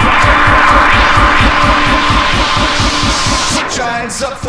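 Electronic dance music mixed live by a DJ on turntables, with a steady beat. A hiss swells over the beat and cuts off just before the end, where the music changes.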